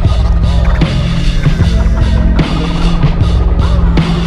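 Hip hop instrumental intro: a loud, looping beat with deep bass, cut with turntable scratches.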